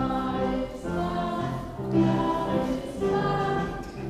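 A children's choir singing a hymn in slow phrases of held notes, with piano and band accompaniment.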